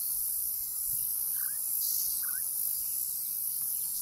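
Steady, high-pitched chorus of insects in the wetland, with two faint short chirps about a second and a half and two and a quarter seconds in.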